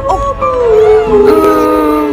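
Killer whale calls: several long, wavering calls overlapping, each gliding slowly in pitch.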